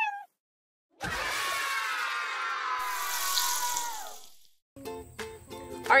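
Musical logo sting: a chord of several tones gliding slowly downward under a bright hiss for about three and a half seconds, then fading out. Near the end, rhythmic background music begins.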